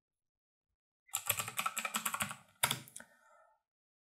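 Computer keyboard typing: a quick run of keystrokes starting about a second in, then a louder single keystroke followed by a couple more.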